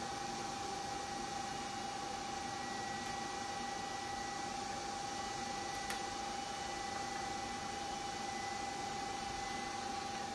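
A 980 nm diode laser machine running: a steady high whine held unbroken over an even hiss of its cooling.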